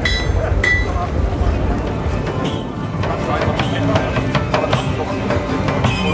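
Crowd chatter and background music, with two ringing metallic clinks about half a second apart in the first second.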